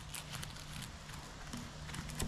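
Small knife cutting into the firm cap of a porcini mushroom: faint, irregular clicks and scraping.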